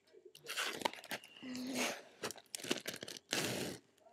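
Plastic binder pocket pages crinkling and rustling in irregular bursts as a trading-card binder is handled and a page is turned.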